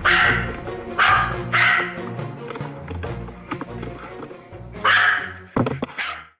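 Hungarian Pumi dog barking four times, with three barks in the first two seconds and one near the end, over background music. A couple of sharp knocks come just before the end.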